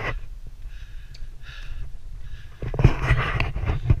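A runner panting close to a GoPro's microphone, with wind and handling rumbling on the mic; the noise swells louder for about a second near the end.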